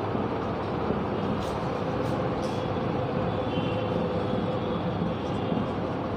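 A marker writing on a whiteboard, a few faint strokes in the first half, over a steady background hum and hiss.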